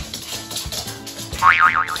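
Background music with a short, wavering squeak-like tone about one and a half seconds in.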